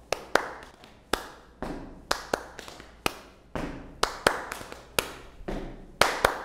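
Body percussion: hand claps and other hand strikes on the body, played as a rhythmic pattern of sharp hits, a few per second.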